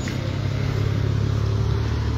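A sedan driving slowly past close by: a low engine hum with tyre noise that builds up and holds steady.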